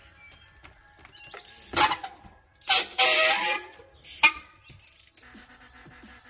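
A trials bike hopping across log and timber obstacles: several loud, sharp knocks of the tyres and bike landing on wood, about two, three and four seconds in, the middle one drawn out into a half-second scrape.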